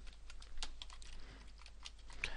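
Computer keyboard typing: faint, irregular light key clicks as a line of code is edited.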